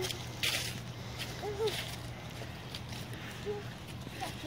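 Footsteps on wet leaves and mud, about one step a second, each a short wet crunch, with a person laughing at the start and brief voice sounds in between.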